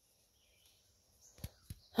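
Faint outdoor background, almost silent, broken by two short sharp clicks about a quarter second apart, a second and a half in.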